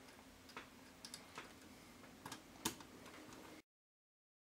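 A few faint, scattered small clicks and ticks from a screwdriver and wire being worked into the screw terminals of a circuit board, the sharpest click near the end. The sound cuts off abruptly about three and a half seconds in.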